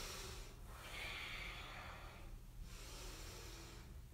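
Faint, long breath through the nose from a man moving through yoga poses, a soft hiss that swells about a second in and fades away after about two seconds.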